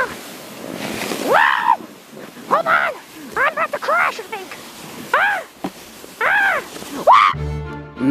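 A person on a sled letting out about seven short rising-and-falling cries while sliding down a snowy hill, over a faint steady hiss of the run. Music starts near the end.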